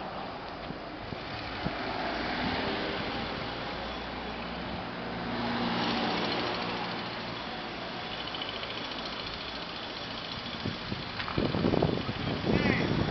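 Street traffic: cars driving past on the road beside the sidewalk, engine and tyre noise swelling and fading as each passes, loudest about six seconds in.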